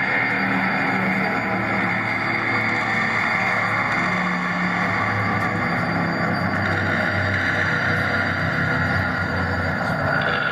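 Electronic drone soundtrack of a projection-mapping show: a dense, steady wash of noise over sustained low tones that shift in pitch, with the upper part of the sound changing about six and a half seconds in.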